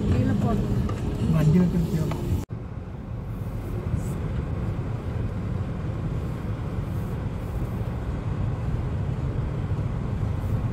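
Steady low rumble of a car's engine and tyres heard from inside the cabin as the car drives. A voice is heard over it for the first couple of seconds, ending at an abrupt cut about two and a half seconds in.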